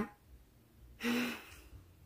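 A young woman's short, breathy sigh with a little voice in it, about a second in, after a pause.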